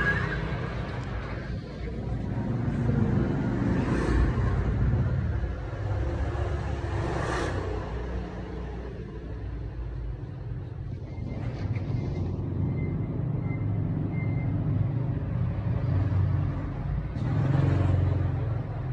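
Steady low rumble of road traffic, with brief swells about four and seven seconds in as vehicles pass.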